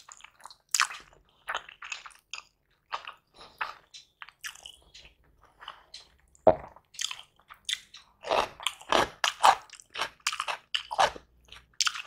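Close-miked eating: a person chewing mouthfuls of egg biryani, with irregular short crunches and wet mouth sounds. The crunches are sparse at first, with one sharp loud bite about six and a half seconds in, then come thick and fast near the end.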